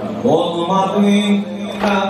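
A man's voice chanting a religious mourning eulogy (maddahi) into a microphone, sliding up at the start into long, held melodic notes.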